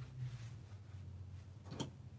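Quiet handling of a small plastic cutting mat and a wool pressing mat as they are moved and set down, with one sharp click near the end, over a low steady hum.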